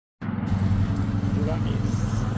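Lawn mower's small petrol engine running steadily at a constant speed, a loud, even drone.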